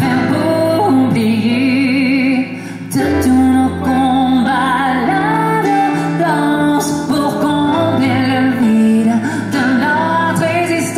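A high male voice singing a French pop ballad live into a handheld microphone with vibrato on held notes, backed by guitars and electric bass; a deep bass note comes in about three seconds in.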